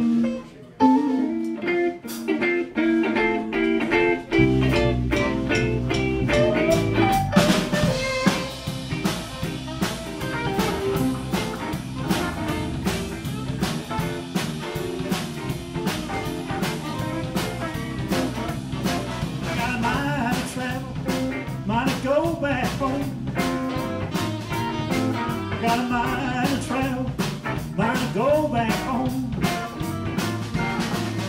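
Live blues band starting a song: a lone electric guitar plays an intro riff, then bass guitar and drum kit come in about four seconds later and the full band plays a steady blues groove, with saxophone joining in.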